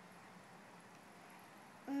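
Near silence with faint room hiss during a pause in an unaccompanied song. Just before the end a young girl's voice comes back in, singing one low note.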